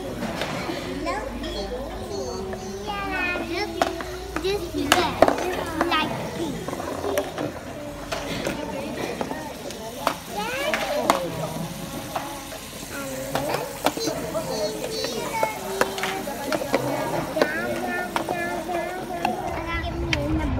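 Children's voices and chatter, high and lively, with a few sharp clicks scattered through.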